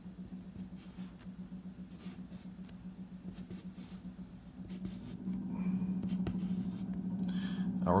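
Graphite pencil scratching on paper in short separate strokes as lines are drawn, over a steady low hum that gets louder about five seconds in.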